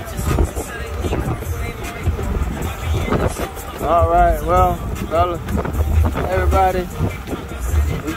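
Fishing boat's engine running under way: a steady low rumble mixed with wind on the microphone.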